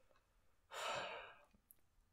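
A person sighing once, a breathy exhale of about half a second near the middle, with quiet on either side.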